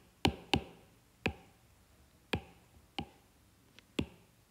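Stylus tip tapping on a tablet's glass screen: about six sharp, irregularly spaced taps.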